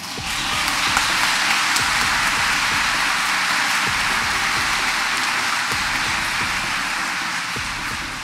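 Congregation applauding in a dense, steady patter that starts as the bishop breaks off his announcement that the imprisoned bishops were freed, and tapers slightly near the end.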